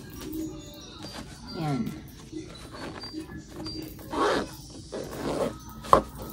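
Clothes and a fabric packing cube rustling as it is packed and handled, with a louder rustle about four seconds in and a sharp click near the end. A short murmured vocal sound, falling in pitch, comes about two seconds in.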